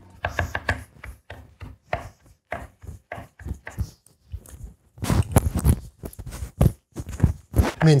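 Chef's knife rapidly mincing garlic on a wooden cutting board: a quick series of sharp knife taps on the board. The chopping drops off to almost nothing about halfway through, then comes back louder and denser.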